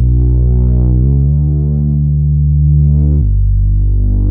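Retrologue 2 synth drone bass, a triangle wave layered with a multi-sawtooth oscillator, holding low sustained notes. It moves to a higher note about a second in and back down after three seconds. Its brightness opens and closes as the automated filter sweeps.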